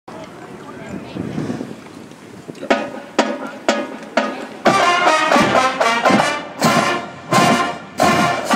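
Marching band brass (trumpets, trombones, sousaphones): about three seconds in, four short, sharp chords half a second apart, then the full band plays on.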